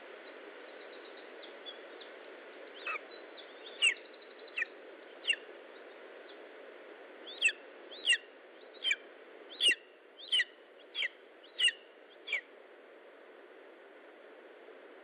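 A young bird of prey in the nest calling: about a dozen short, sharp notes, each falling steeply in pitch, spaced irregularly at roughly one every half-second to second, from about three seconds in until near the end, over steady background hiss.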